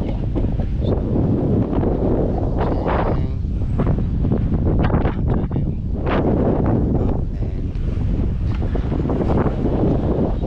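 Wind buffeting a GoPro action camera's built-in microphone: a loud, steady low rumble.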